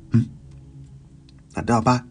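Storyteller's voice pausing between phrases, with faint background music and a few soft ticks heard in the gap.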